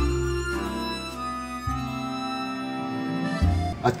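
Instrumental background music of sustained chords, changing every second or two, with a man's voice beginning right at the end.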